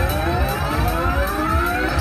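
WMS King of Africa slot machine's big-win celebration sound: a pitch sweep that rises steadily over about two seconds above a pulsing bass beat, as the win meter counts up toward the next win tier.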